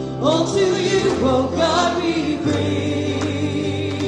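Live church worship band playing a praise song: a man sings the lead with other voices joining, backed by acoustic guitar and sustained bass notes.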